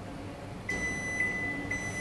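Glen GL 672 built-in microwave oven's control panel sounding a long, steady, high-pitched electronic beep that starts about two-thirds of a second in. The beep marks the preset delayed start of microwave cooking as the clock reaches the set time.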